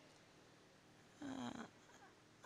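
Near silence in a pause in speech, broken a little past a second in by one brief low hum from the speaker's voice, like a short hesitation sound.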